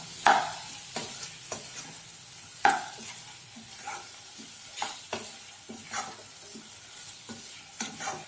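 Wooden spatula stirring and scraping potato pieces frying in a metal saucepan, with irregular knocks against the pan over a steady frying sizzle.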